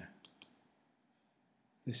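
Two or three faint, short clicks in quick succession about a quarter of a second in, at the end of a spoken phrase, then quiet room tone until the voice resumes near the end.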